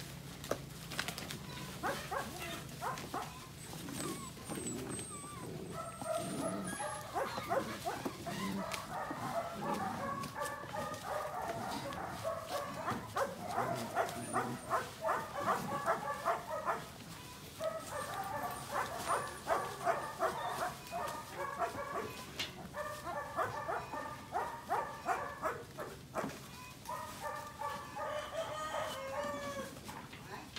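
Bursts of short animal calls, repeated several times a second, mostly from about six seconds in, with brief breaks.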